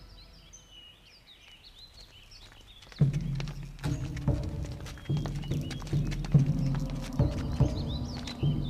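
Birds chirping as a music cue fades out. About three seconds in, a loud, uneven run of low thumps with a low pitched hum beneath it starts abruptly and keeps on.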